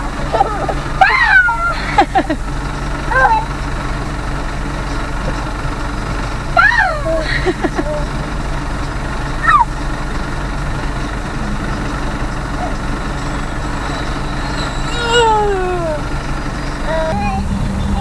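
Steady hum of a car's engine and road noise inside the cabin. A few brief high-pitched squeals, each rising and falling, come now and then from a baby.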